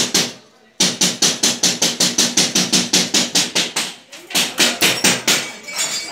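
Rapid, regular sharp knocking, about five or six strikes a second, in two runs with a brief break about four seconds in.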